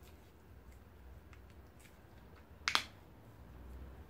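A single sharp plastic click about two-thirds of the way in, as the cap of a tube of metal polish is opened, amid faint handling noises.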